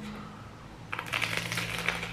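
Crunching of a bite into toasted sourdough topped with avocado and tomato: a run of soft crunches starting about a second in.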